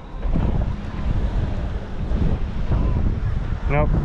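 Wind buffeting the microphone: a steady low rumble, with a haze of ocean noise beneath it.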